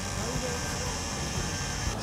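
Outdoor harbour background noise: a steady low rumble with a steady high-pitched whine over it, which cuts off suddenly near the end.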